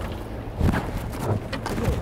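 A few irregular knocks and thumps as a blackfin tuna is lifted over the side and bumps against the boat's hull, over a low rumble of wind and sea.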